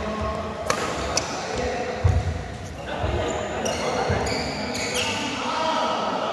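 Badminton rally: two sharp cracks of rackets striking the shuttlecock, about a second in and again half a second later. Then heavy thuds of players' feet landing on the court floor, the loudest about two seconds in, with a few more after.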